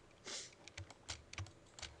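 Faint, irregular clicking of a computer keyboard and mouse in use, with a short hiss about a quarter second in.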